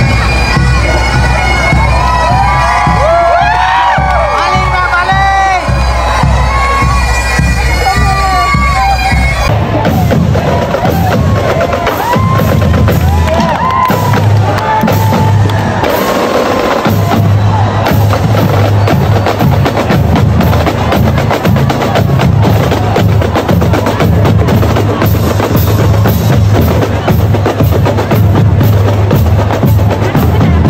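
Bagpipes playing a melody over their steady drone, with drums joining in. About ten seconds in the sound changes abruptly to a denser, noisier recording, with the drone and melody still running under drumming.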